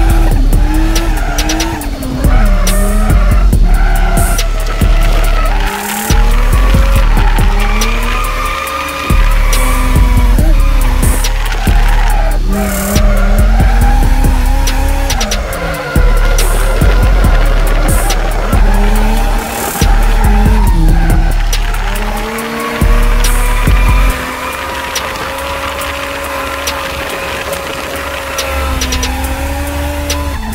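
Turbocharged RB30ET straight-six of an R31 Skyline drift wagon heard from inside the cabin. It revs up repeatedly and drops off sharply with each throttle lift or gear change, with tyres squealing as the car drifts.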